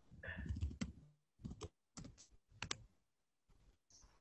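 Faint computer-keyboard clicks: a few keystrokes in quick pairs between about one and three seconds in.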